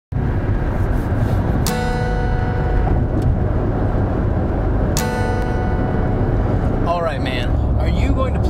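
A guitar strummed twice, the same chord about three seconds apart, each left to ring, over the steady rumble of road and engine noise inside a moving car. A short vocal sound comes near the end.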